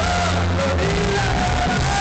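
Loud live band music with a singing voice over a steady bass, heard from the crowd in front of the stage.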